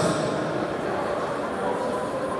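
Indistinct voices and murmur of people talking in a large, echoing sports hall, with no single clear speaker.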